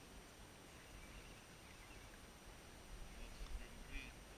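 Quiet lakeside ambience: wind rumbling on the microphone, louder near the end, with a few faint bird chirps.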